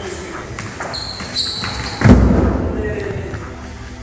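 Feet of two push-hands sparring partners on a wooden floor: two short high squeaks about a second in, then a heavy thud about two seconds in that dies away slowly, with voices in the background.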